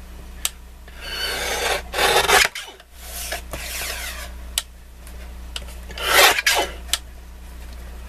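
Paper being slid and cut on a paper trimmer: three rasping strokes, each about one to one and a half seconds long, with a few sharp clicks between them.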